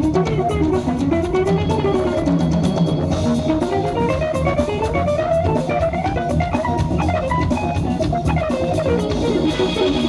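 A jazz-fusion band plays live: a hollow-body electric guitar leads with fast runs that rise and fall, over a busy drum kit and electric bass.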